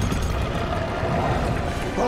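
Deep, steady rumbling of a huge spiked ball trap rolling close behind.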